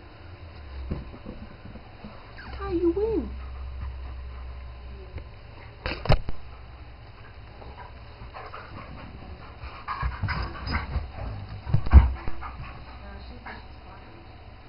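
German shepherd and kitten play-fighting: scuffling and bumping on the floor, with a short rising-and-falling whine about three seconds in, a sharp click near the middle, and a burst of thuds near the end, the loudest about twelve seconds in.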